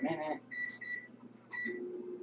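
Microwave oven keypad beeping as its buttons are pressed: several short, high beeps. About a second and a half in, the microwave starts running with a steady low hum.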